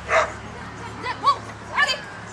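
Australian Shepherd barking as it runs an agility course: one sharp bark at the start, then two quick barks about a second in.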